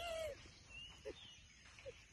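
A short falling voice sound, then faint bird chirps and a thin high whistled note from the surrounding trees.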